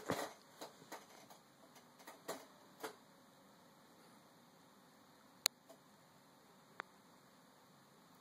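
Quiet room tone with a few faint clicks and taps in the first few seconds, then two single sharp clicks about five and a half and seven seconds in.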